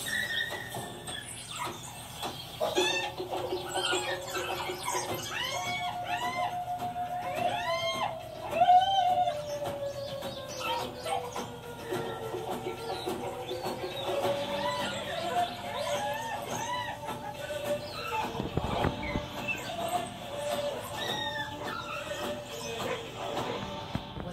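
Television playing a wildlife documentary soundtrack: background music with a long held note that slowly dips and rises, under many short, high-pitched squealing chirps of animal calls.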